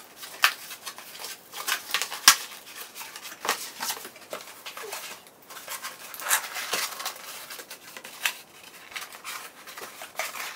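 Cardboard shipping box being folded and assembled by hand: irregular rustling and scraping of the board, with sharp snaps and creaks as the flaps are creased and bent into place, the loudest about half a second in and again about two seconds in.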